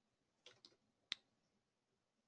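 Near silence broken by three small clicks: two soft ones close together, then a sharper one about a second in.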